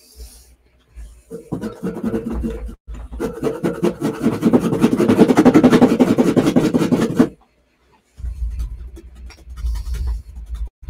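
Paintbrush scrubbing and scratching in paint on a palette, loading it with yellow: a loud, close rubbing that lasts about six seconds and stops abruptly, followed by fainter rubbing near the end.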